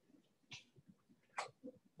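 Near silence: room tone, with a few faint short sounds, one about half a second in and a sharper, click-like one later.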